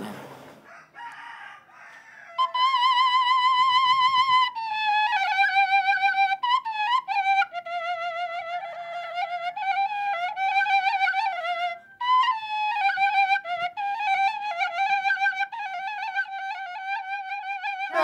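Balinese bamboo flute (suling) playing a solo melody with a wavering, trilling pitch, starting about two seconds in, with a brief break about two-thirds of the way through.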